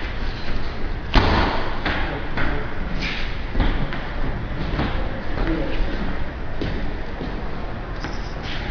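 A run of irregular thumps and knocks in a gym, the loudest about a second in, over a steady background noise.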